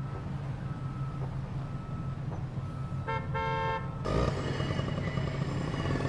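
Street traffic with a steady low engine hum; a vehicle horn honks once, for under a second, about three seconds in, and the traffic grows busier from about four seconds.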